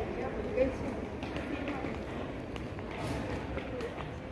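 Indistinct voices too faint to make out words, with a few light clicks.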